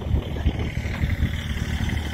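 Tractor engine running steadily, just after a start.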